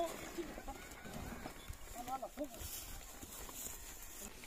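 Faint sound of horses being ridden at a walk through pasture grass, with brief faint voices about halfway through.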